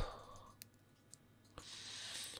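Small flush side cutters snipping through a thin insulated lamp wire, a single sharp click, with a fainter click after it. A soft hiss follows near the end.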